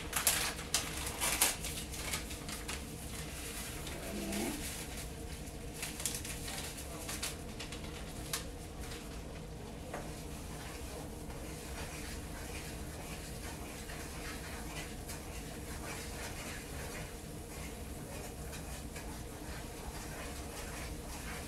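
Wooden spoon stirring and scraping a skillet of flour-roux gravy, with clicks of the spoon against the pan in the first couple of seconds and again around six to eight seconds in, over a steady low hum.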